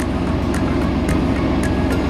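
Vehicle engine running steadily, heard from inside the cab as a low, even hum.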